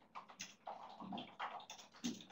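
Faint, irregular clicks and taps of a computer keyboard and mouse, several in quick succession.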